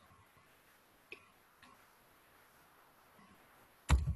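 Quiet room tone with a few faint clicks from someone working a computer, as the on-screen document is zoomed. A sharper click comes near the end, followed by a brief low sound.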